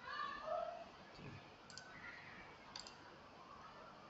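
Two faint computer mouse clicks about a second apart, each a short sharp tick.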